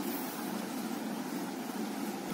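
Steady background noise with a low hum and no distinct events.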